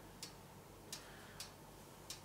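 Faint, regular ticking, about one sharp tick every half second with slightly uneven spacing, over quiet room tone.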